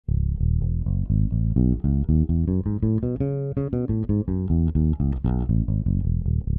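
Five-string electric bass played unaccompanied: a fingerstyle run through a C# natural minor scale across two octaves, about five plucked notes a second, climbing to the top around three and a half seconds in and then coming back down.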